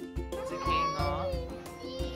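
Background music with a steady beat, and over it a penguin calling: wavering, rising-and-falling cries from about half a second in, and again near the end.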